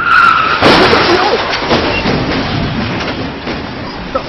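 A motorbike crash: a brief high squeal, then a sudden loud burst of skidding and clattering that slowly dies away.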